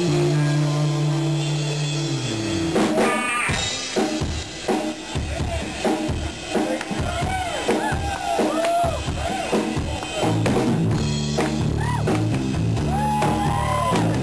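Live rock band with electric guitar, bass and drum kit, in a distorted recording. A held low chord slides down about two seconds in, the drums then play a break of separate hits, and the low guitar and bass notes come back in after about ten seconds.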